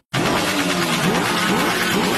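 Vehicle engine and road noise, steady and dense, with a few short rising whines in pitch, starting abruptly just after a brief dropout.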